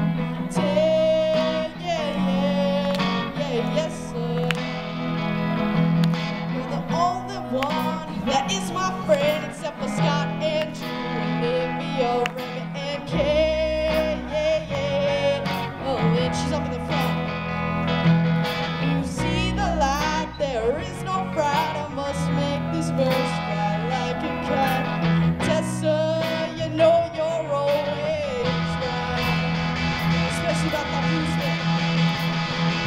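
Live rock band playing a song: electric guitars, bass guitar and drum kit, with a lead vocal sung over them at a steady level.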